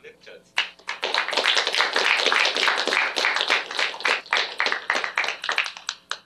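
Audience applause, many hands clapping at once. It starts abruptly about half a second in and thins out near the end.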